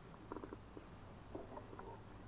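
Quiet low hum, with two faint, brief snatches of a murmured voice, one early and one after the middle.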